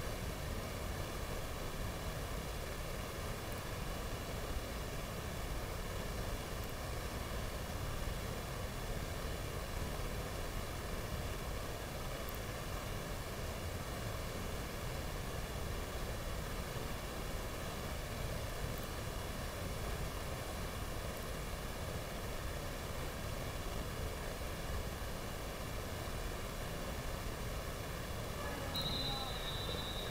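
Steady, even background noise with no distinct events, and a brief high tone near the end.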